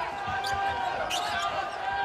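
A basketball bouncing a couple of times on a hardwood court, over arena crowd noise with faint voices.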